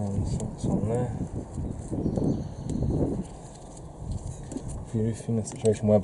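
Mostly indistinct talking, with light clicks and taps of small metal parts, washers and nuts, being handled at an engine's exhaust manifold studs.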